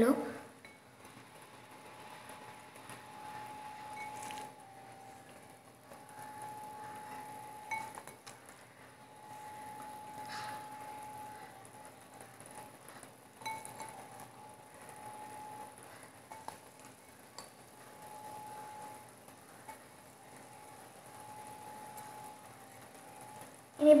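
Faint, scattered clinks and knocks against a nonstick pan as chicken masala is spread by hand over the cooked egg batter, over a low steady hum.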